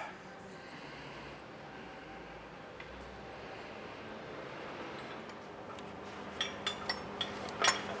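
Quiet workshop room tone with a faint steady hum, then several light metallic clinks in the last two seconds as an engine crane's lifting chain and straps are handled.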